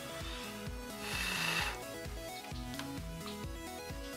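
Background music with a steady beat. About a second in, a brief hissing noise lasting under a second rises over it.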